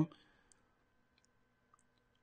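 A quiet pause between spoken phrases: room tone with a faint steady hum and a few faint, scattered small clicks.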